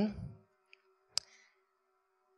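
A single sharp click a little past a second in, with a faint tick just before it, over a faint steady hum.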